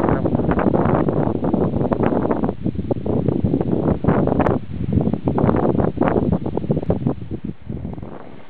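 Strong wind buffeting the microphone: loud, gusty noise coming in irregular surges, thinning out in the second half and easing near the end.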